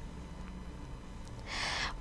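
Faint steady background hiss, then a short breath drawn in near the end, just before a woman starts speaking.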